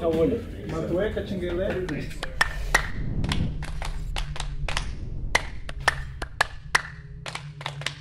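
A couple of seconds of indistinct voices, then a logo-animation sound effect: a run of sharp, irregular clicks, some with a short ringing tone, over a steady low hum that fades near the end.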